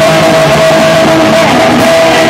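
Live rock band playing an instrumental passage, with electric guitar, loud. One steady note is held through most of it.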